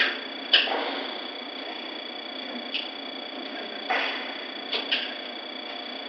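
A handful of short, sharp clicks and knocks, three of them close together near the end, over a steady hiss with a faint high-pitched whine from the CCTV recording.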